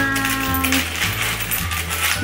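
Euro coins clinking against each other and the tabletop as a heap of them is picked through and sorted by hand. Background music plays throughout, with a long held note in the first second.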